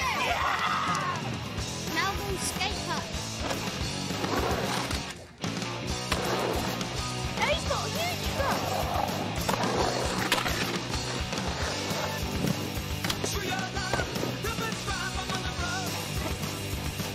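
Skateboard wheels rolling on concrete, mixed with voices and music.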